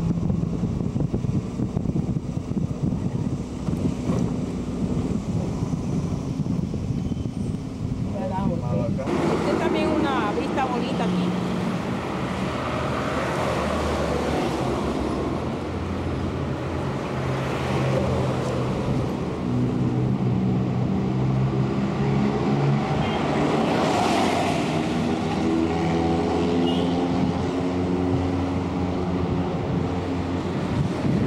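A car driving, heard from inside the cabin as a steady low rumble of engine and road noise. About nine seconds in it breaks off suddenly, and indistinct voices over outdoor background noise follow.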